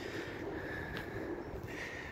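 Quiet outdoor background noise: a faint, even hiss and rumble with a faint steady hum, and no distinct event.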